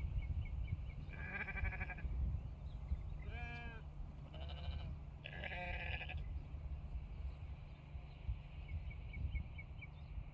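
Sheep bleating in a grazing flock: four bleats between about one and six seconds in, one with a pitch that bends up and down, over a steady low rumble.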